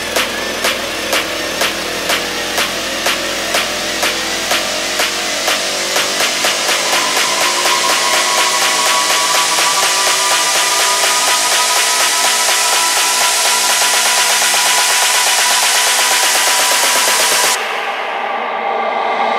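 Electronic dance music build-up in a DJ set: beat hits that come faster and faster. The bass drops out about six seconds in while a rising tone and a swelling noise riser build, then the music cuts off suddenly just before the end, ahead of the drop.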